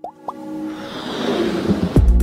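Electronic logo-intro sound effects: two or three quick rising pops, then a whoosh that swells steadily and lands on a deep bass hit at the end, where electronic music begins.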